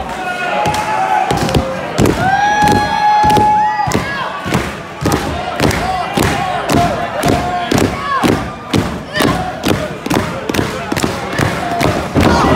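Repeated thuds of wrestlers' blows and bodies hitting the ring, about two a second for much of the time, mixed with shouting voices and crowd noise.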